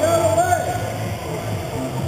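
A man's race-commentary voice with music underneath.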